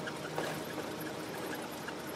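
Steady rushing noise inside a moving bus, with faint scattered tones over it.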